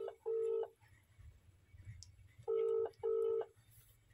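Ringback tone of a phone call heard through a phone's speaker: a low steady tone in double pulses, one pair at the start and another about two and a half seconds in. It is the line ringing while the call waits to be answered.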